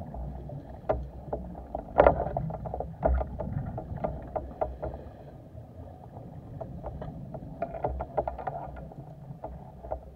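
Underwater sound heard through a speargun-mounted camera's housing: a steady low water rush with irregular sharp clicks and knocks, the loudest about two seconds in.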